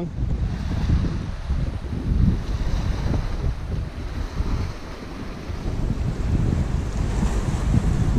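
Wind buffeting the microphone in uneven gusts, over ocean surf washing around rocks.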